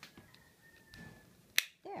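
A single sharp plastic click about a second and a half in: a GoPro camera housing's latch snapping as the case is swapped, after faint handling sounds.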